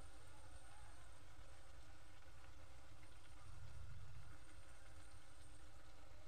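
Faint sizzle of a green-pea puri deep-frying in hot oil in an aluminium kadhai, over a steady low rumble.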